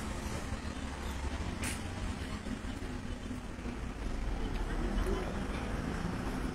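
Outdoor street background noise: a steady low rumble of traffic, with one brief click about two seconds in.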